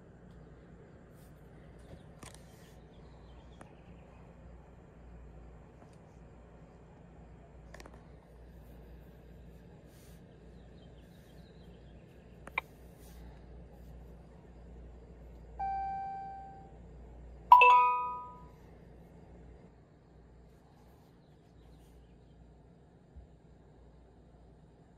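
Two electronic chime tones, a ding and then a louder, slightly higher one about two seconds later, each ringing out for about a second, over a low steady hum and a few faint clicks.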